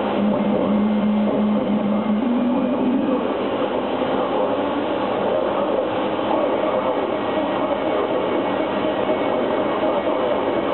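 Live electronic noise music: a dense, steady wall of noise. A low tone steps up in pitch twice in the first three seconds and then sinks into the mass.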